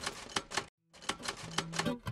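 Typewriter-style typing sound effect: a quick, uneven run of key clicks, with a short pause a little under a second in.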